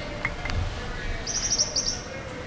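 A small bird chirping: a quick run of about six short, high chirps in the second half.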